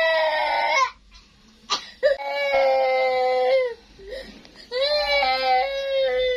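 A toddler girl crying in three long, high wails, each held about a second and a half, with short catches of breath between them.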